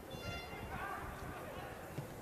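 Faint open-air sound of a football pitch: distant shouting voices of players, with a brief high pitched whistle-like tone just after the start and a small knock near the end.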